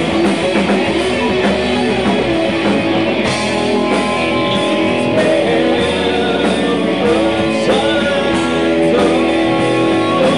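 Live rock band playing: electric guitar, bass guitar and drums, with a harmonica playing held, wavering lead notes over them.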